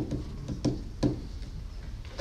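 About five light taps at uneven spacing, fingers striking the touch pads of an Artiphon Instrument 1 controller.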